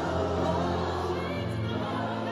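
Live gospel music over an arena sound system: several singers holding sustained notes together over a band with steady bass.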